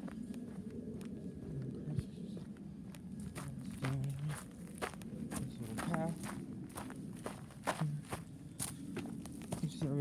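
Footsteps of a person walking at a steady pace, first on a concrete driveway and then onto a gravel and dirt path, with a few brief murmured vocal sounds in between.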